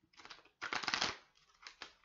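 A deck of tarot cards being shuffled by hand: a dense run of rapid card flicks, loudest about half a second in, followed by a few separate card taps.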